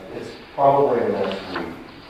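A person speaking in a meeting room.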